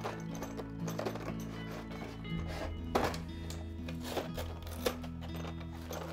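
Background music of held low notes that shift a few times. A few light knocks come through it, from the kit's plastic parts tray and cardboard box being handled.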